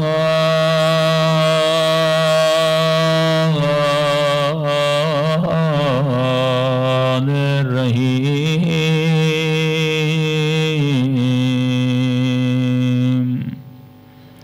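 A man's voice chanting in long, held notes with wavering ornaments and a few changes of pitch, stopping abruptly near the end.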